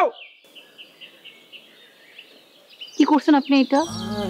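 Small birds chirping in a string of short, high notes over quiet outdoor background noise, in a pause between a man's lines. His voice comes back about three seconds in.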